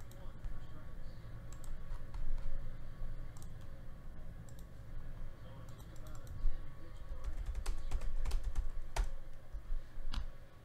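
Typing on a computer keyboard: scattered key clicks, coming thicker in the second half, over a steady low hum.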